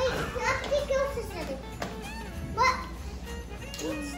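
A young child's voice, wordless calls that rise and fall in pitch, over steady background music.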